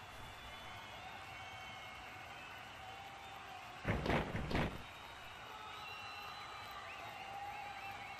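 Two quick slam-like thumps about four seconds in, from the wrestling game's impact sound effects. They stand out over a steady low background noise.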